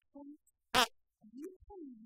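Sound from the playing video: short, faint pitched vocal sounds that slide up and down, with one loud, short raspy burst a little under a second in.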